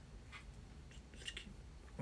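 A quiet pause: faint room tone with a couple of brief, soft hissing sounds, once about a third of a second in and again just past a second.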